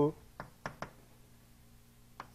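Chalk striking a blackboard: three sharp taps in quick succession in the first second.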